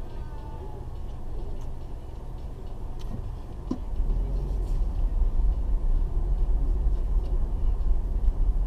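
Low rumble of a car's engine and road noise heard from inside the cabin. It grows louder about halfway through as the car moves off, with a couple of faint clicks just before.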